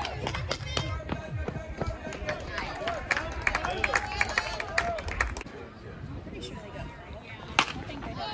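Spectators talking and calling out around a baseball field, with one sharp crack of a bat hitting the ball near the end.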